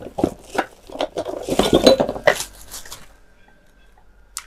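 Cardboard box and plastic wrapping rustling and knocking as an angle grinder is pulled out of its packaging, a busy clatter that stops about three seconds in.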